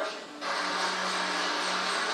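Film soundtrack: a sustained low musical note under a steady rushing wash of noise, starting about half a second in after the spoken line ends.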